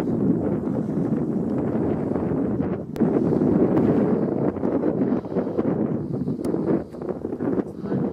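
Wind buffeting the microphone: a steady low rumble that drops away briefly just before three seconds in.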